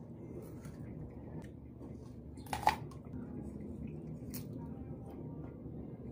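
A person biting into and chewing a raw green mango, with one loud crisp bite about two and a half seconds in and a few smaller clicks of chewing, over a steady low hum.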